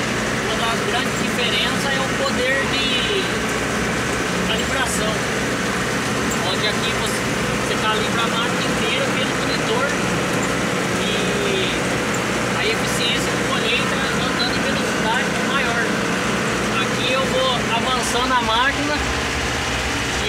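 Steady drone of a Jacto K3000 coffee harvester's Yanmar engine running under harvesting load, heard from inside the cab, with a man's voice talking over it.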